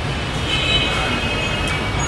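Steady low rumble of background noise, with faint high thin tones in the middle.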